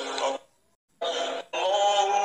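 A voice chanting an Arabic prayer in a long, drawn-out melody. It breaks off after about half a second for a brief silence, then takes up again about a second in.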